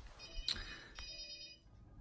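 Faint electronic ringing tones that last about a second and a half, with two soft clicks about half a second apart.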